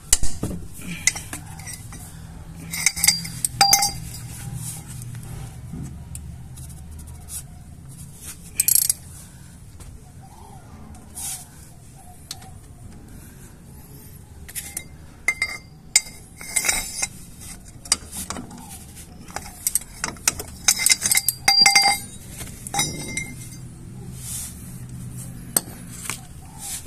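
Ratchet with a 14 mm socket working loose a Chevrolet Aveo's front brake caliper bolts: bursts of ratchet clicking and metal-on-metal clinks, with quiet pauses between them.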